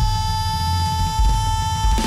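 A woman singer holds one long, steady high note over band accompaniment with heavy bass and drums.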